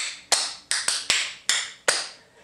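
Clogging taps striking a hard floor as a dancer does two clogging basics (double step, rock step): about seven sharp clicks in a quick, uneven rhythm, each ringing briefly.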